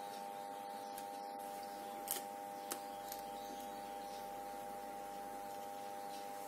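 Quiet handling of paper quilling pieces and a small pointed tool on an envelope: two light taps, about two seconds in and just under three seconds in, over a steady electrical hum.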